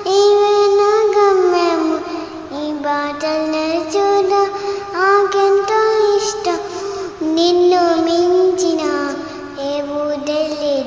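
A young girl singing a Telugu Christian song, holding long notes and sliding between pitches, with short breaks between phrases.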